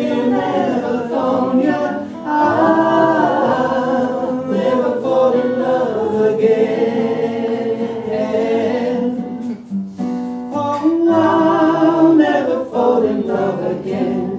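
A woman singing, with long held notes, to a strummed acoustic guitar.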